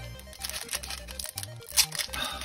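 Foil Pokémon booster pack wrapper crinkling and being torn open by hand, with a sharp crackle near the end, over steady background music.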